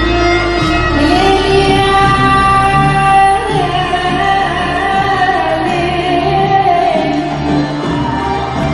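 Live Arab pop music: a woman singing long held notes over a full band, amplified through the PA and echoing in a large hall.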